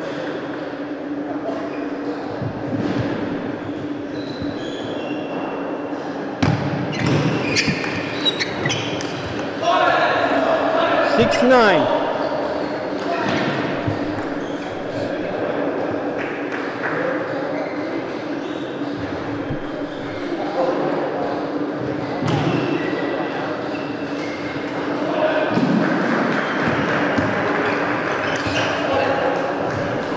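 A table tennis rally in a hall: the celluloid ball clicks quickly off bats and table for a few seconds, then players' voices and a squeak, over a steady hum of the hall.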